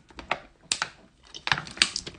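Thin plastic water bottle crackling in the hand as it is drunk from: a run of irregular sharp clicks and crinkles.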